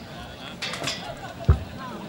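Indistinct chatter from a gathered crowd of men, with one sharp, dull thump about a second and a half in.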